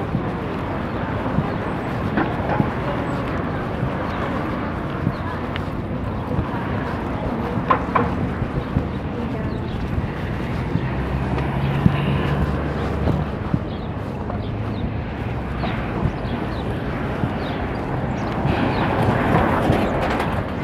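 Street ambience heard while walking: indistinct voices of people close by and passing traffic, with a low engine hum in the middle stretch. Scattered knocks and rustle come from the handheld phone as it is carried.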